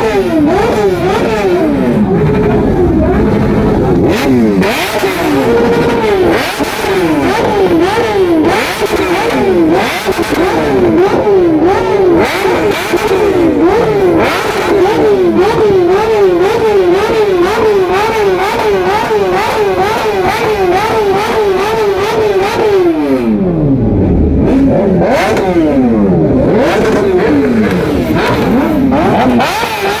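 Sport motorcycle engines revved again and again, the throttle blipped in quick succession so the pitch rises and falls about twice a second, with several bikes overlapping. About three quarters of the way through, one engine's pitch drops away sharply before the revving picks up again.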